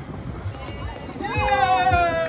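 Outdoor crowd noise with low thuds, then a little over a second in several voices break into a loud, long held shout or cheer that sinks slowly in pitch.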